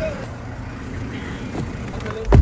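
Someone getting into a car: a faint click and light handling sounds over a steady low vehicle rumble.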